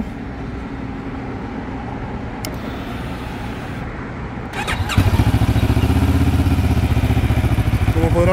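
Benelli TRK702X's 693 cc two-cylinder engine being started: the starter cranks briefly about four and a half seconds in, the engine catches about five seconds in and settles into a steady idle.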